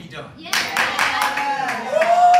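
Hands clapping quickly and steadily, starting about half a second in, with a voice calling out and holding a note over the claps.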